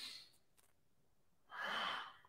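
A man breathing audibly while doing a yoga cat-cow movement: a faint breath at the start, then a short, soft breath with a slight whistle about one and a half seconds in, as the spine rounds on the exhale.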